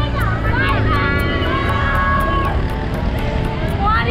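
A group of people shouting and singing, with one long held note in the middle, while riding in the open back of a moving truck; the truck's engine and road rumble run steadily underneath.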